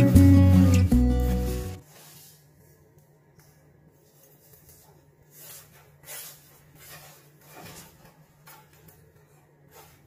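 Background music that cuts off about two seconds in, followed by a few soft, irregular crunches of a knife sawing through a crisp pan-toasted tortilla on a wooden cutting board.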